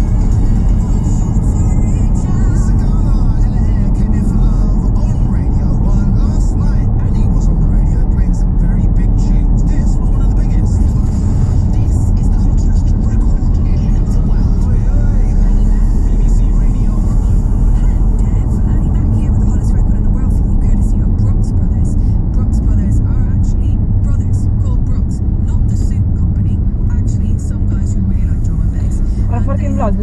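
Steady low rumble of a car's engine and tyres heard from inside the cabin while driving, under music with a voice in it.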